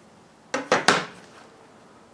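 Steel carpenter's square set down on a plywood sheet: two short metal-on-wood clacks, about a third of a second apart.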